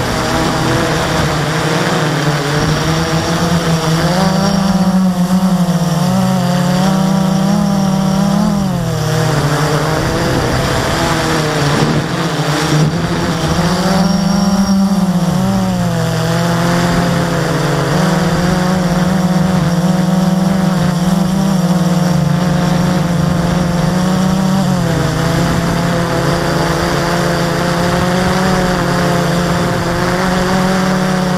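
Blade 350QX quadcopter's four electric motors and propellers running with a steady pitched buzz, heard up close from a camera mounted on the airframe. The pitch wavers and shifts with the throttle, dipping briefly about nine and fifteen seconds in and again near twenty-five seconds.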